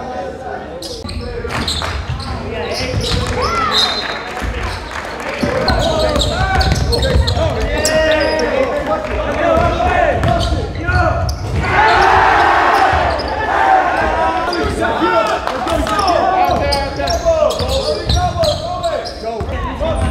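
Live basketball game sound in a gym: a basketball bouncing on the hardwood floor, sneakers squeaking, and indistinct shouting from players and spectators, busiest about twelve seconds in.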